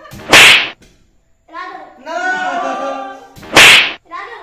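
Two loud whip-like swooshes, each swelling over about half a second and cutting off sharply, about three seconds apart, as balloons are swung at a seated boy's head. Between them comes a long held voice-like sound.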